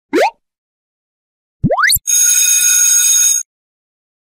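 Editing sound effects: a short rising swoop just after the start and another about a second and a half in, then a bell-like ring lasting about a second and a half, the kind used for a subscribe-and-notification-bell animation.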